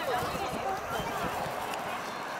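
Indistinct voices of children and adults calling out across a football pitch, with players' running footsteps on the turf.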